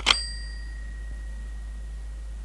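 Telephone handset set down on its cradle with a clack, and the phone's bell gives a brief ding that fades out over about a second and a half.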